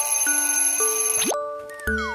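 A children's smartwatch alarm ringing as a simple electronic tune of steady stepped notes. The tune ends with a quick upward slide a little over a second in, and a falling glide and new notes follow near the end.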